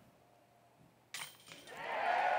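A second of near silence, then a sudden metallic clash of a disc hitting a disc golf basket's chains, followed by a crowd starting to cheer, growing louder toward the end.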